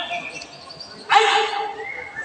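A high-pitched girl's voice shouting a marching-drill command, one drawn-out call about a second in.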